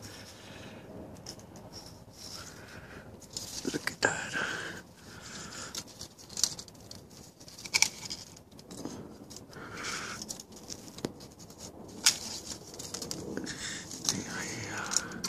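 Rustling of leafy citrus branches with scattered sharp clicks, the loudest about twelve seconds in.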